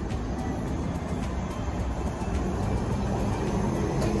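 Articulated city bus driving past in street traffic: a steady low engine rumble.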